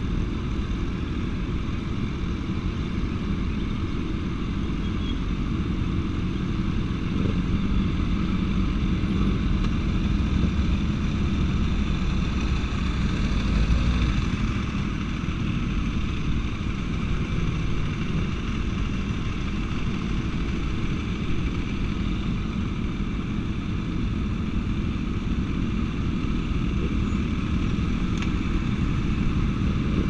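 Sport motorcycle engines running steadily at low speed as a group of bikes rolls along together, swelling a little about halfway through.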